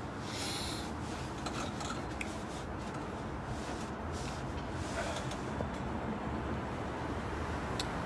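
A phone's microphone is rubbed and knocked as it is repositioned, near the start, over a steady hum of city traffic.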